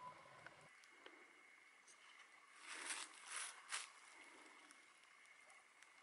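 Three short crunching rustles of dry leaves and twigs in quick succession about halfway through, otherwise near silence.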